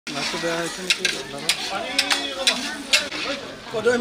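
Long-handled metal ladle stirring food frying in a large iron wok over a wood fire: a steady sizzle, with about seven sharp scrapes and clanks of the ladle against the pan.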